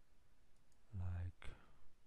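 A man's short, low hummed voice sound about a second in, followed by a single sharp computer mouse click.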